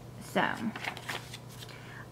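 A brief crisp rustle of paper as a page of a pocket traveler's notebook planner insert is turned.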